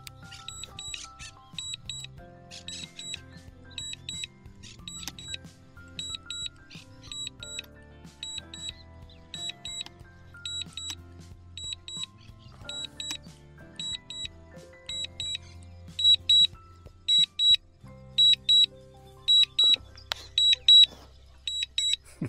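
Background music with a melody, over a steady run of short, high double beeps, about one pair a second, that get louder about two-thirds of the way through: the DJI drone remote controller's alert beeping while the drone flies its automatic return-to-home.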